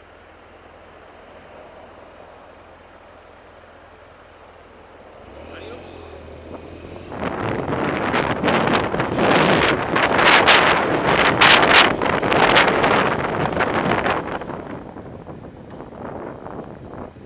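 Wind buffeting the microphone of a camera on a moving vehicle. It is quiet at first, builds as the vehicle pulls away and gathers speed, is loud and gusty through the middle, and eases off near the end.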